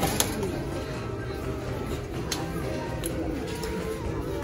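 Store background music playing over the shop's sound system, with a light knock near the start as a plastic conditioner bottle is set into a metal shopping cart.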